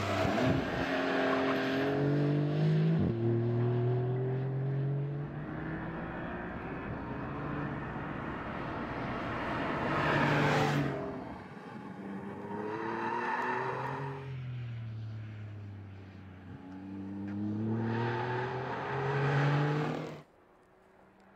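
Porsche 911 Carrera 4S turbocharged flat-six engine accelerating hard through the gears of its eight-speed PDK, its pitch climbing in repeated runs broken by quick shifts. The car passes close and loud about ten seconds in, then eases off and pulls away again.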